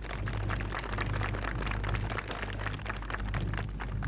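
Applause: many hands clapping in a dense, irregular patter, over a steady low electrical hum.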